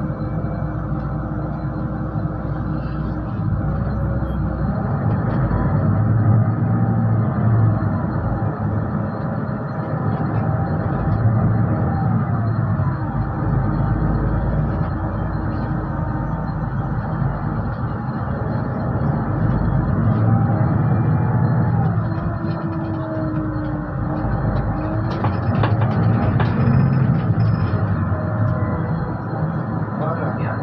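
Inside a Solaris Urbino 12 III city bus on the move: steady engine and road rumble that swells several times as the bus pulls away and gathers speed, with a drivetrain whine gliding up and down in pitch.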